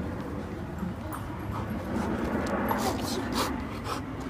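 A dog making sounds close by as it plays with a ball, with a few short, sharp noises in the second half.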